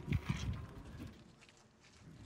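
Dancers' footfalls on stone: a few soft thumps and scuffs in the first half second, one more thump about a second in, then only quiet outdoor background.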